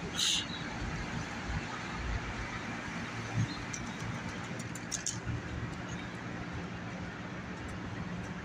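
City street traffic with a steady engine hum underneath. A short high-pitched burst comes just after the start, a low thump a little past the middle, and a few sharp clicks about five seconds in.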